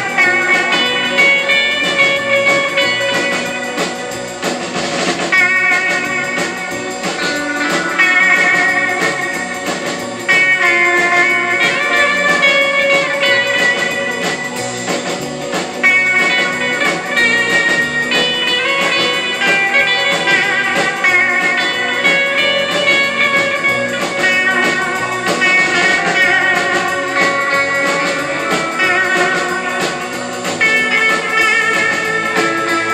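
A live rautalanka band playing: electric guitars carry a melody over a drum kit beat.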